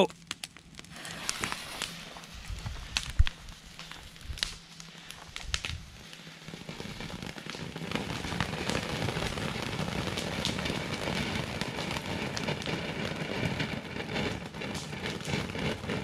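Snowstorm fountain firework burning: scattered clicks and crackles for the first few seconds, then from about seven seconds in a steady hissing spray that keeps going.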